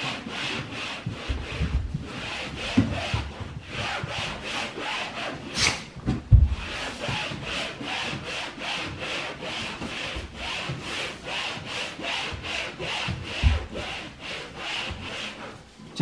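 Damp cloth being rubbed back and forth on a wall in quick, even scrubbing strokes, about three a second, as the wall is wet-wiped clean. A few dull thumps come in between the strokes.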